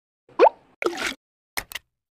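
Subscribe-button animation sound effects: a rising pop, a short whoosh, then two quick mouse clicks.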